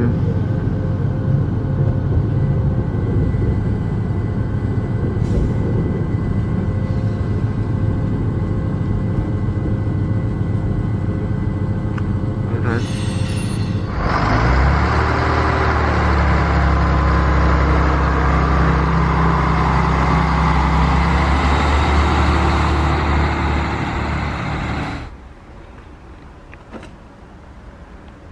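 X73500 diesel railcar: its steady engine and running noise heard on board as it rolls into the halt, then a brief clatter about halfway through as the doors open. The railcar's diesel engine then runs up louder, its note rising, as it pulls away from the platform, and the sound drops off suddenly near the end.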